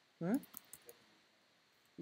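A short rising "hmm?" from a voice, followed by a few faint clicks of computer keys being typed, then quiet room tone.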